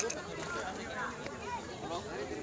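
People's voices talking indistinctly, with no clear words, and a brief click right at the start.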